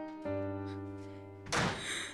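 Background music of held notes, with a door shutting in a single noisy thud about a second and a half in.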